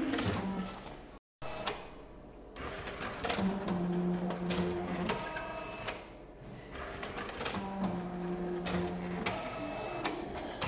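Bank-statement printer at work: a motor whine in two stretches of about a second and a half each, with clicks and mechanical clatter around them, and a brief drop-out just over a second in.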